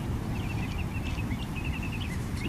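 Wind rumbling on the microphone, with a series of faint, short, high chirps.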